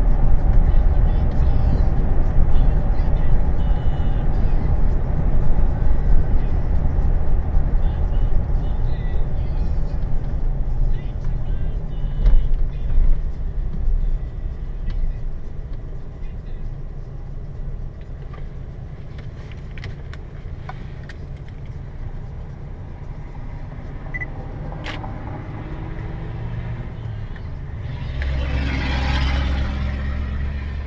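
Car engine and tyre rumble heard from inside the cabin while driving, fading as the car slows to a stop at a traffic light. A brief hiss comes near the end.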